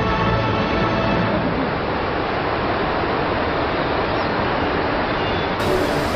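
A steady, loud rush of water, like a dam's spillway discharging, under background music. The music fades in the first second and comes back after a cut near the end.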